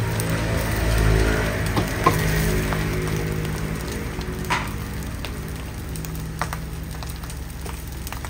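Rice, ham and egg sizzling in a hot wok over a gas burner, over a steady low hum, with a few sharp knocks of the wooden spatula on the wok. The sizzle is strongest about a second in and slowly dies down through the rest.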